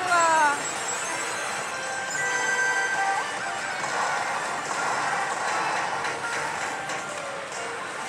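Pachislot machine (Million God – Kamigami no Gaisen) playing electronic bonus music and sound effects through its GOD GAME bonus, with steady held tones over loud slot-hall din. A brief voice is heard at the very start.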